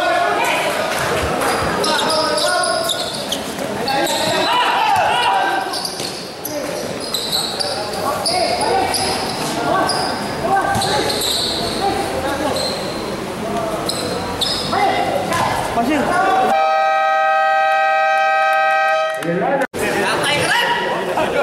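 Crowd shouting and short high squeaks of players' shoes on a basketball court, in a large echoing hall. Then, about sixteen seconds in, the scoreboard buzzer sounds one steady tone for about three seconds, signalling the end of the fourth quarter.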